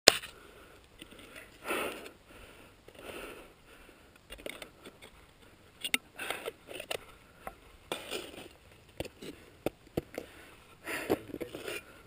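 A climber breathing hard in heavy, spaced breaths, with sharp knocks and scrapes of an ice axe and boots biting into snow and rock; the sharpest knock comes right at the start.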